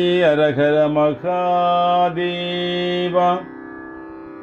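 Male voice chanting a Shaiva devotional invocation in long held notes with a few melodic turns, breaking off about three and a half seconds in.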